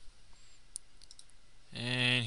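A single faint computer mouse click over low, steady background hiss.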